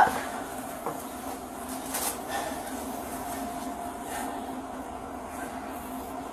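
A steady low hum, with a few faint brief rustles or knocks.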